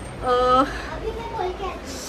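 A young child's high-pitched voice, briefly, then softer talk.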